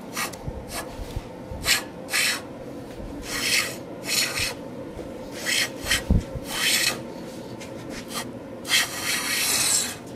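Hand plane shaving the edge of a curly pecan slab: a series of pushed strokes, about eight, each a short hiss of the blade cutting, the last one longer near the end.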